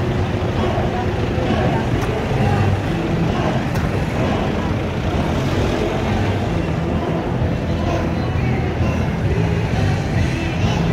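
Steady road-traffic noise with engines running low, mixed with indistinct voices of people walking by.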